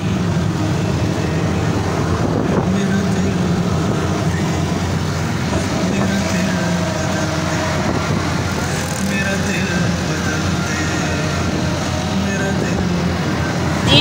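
Auto-rickshaw engine running steadily with road and wind noise, heard from inside the open passenger cabin while it drives along.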